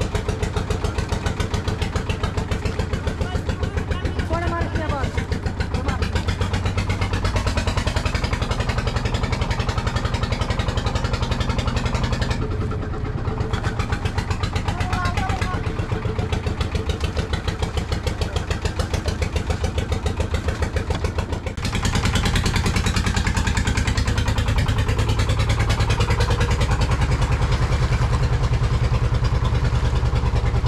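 A fishing boat's engine running with a fast, even chugging. It gets louder about two-thirds of the way through as it picks up.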